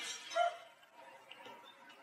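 Quiet room tone with a faint, brief voice from across the room about half a second in.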